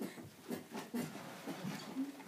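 A rocking chair knocking and creaking in short irregular bumps as a baby rocks in it.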